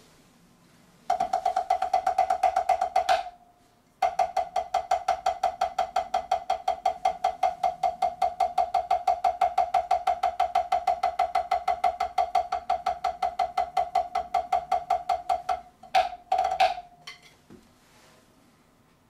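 Drumsticks playing fast, even strokes on a rubber drum practice pad, each hit with a short pitched ping. A brief run, a pause of about a second, then a long steady run of about twelve seconds, ending with a few scattered hits.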